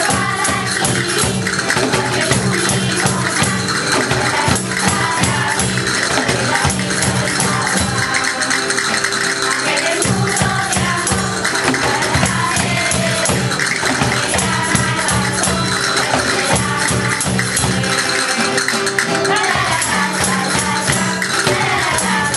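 Children's choir singing a song with a steady instrumental accompaniment, with hand percussion (cajón and shaken or struck percussion) keeping the rhythm.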